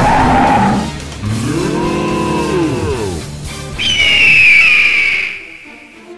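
Animal calls played as sound effects, one after another: a noisy blare that ends just under a second in, then a drawn-out call that rises and falls in pitch, then a high shrill call that fades out about five seconds in.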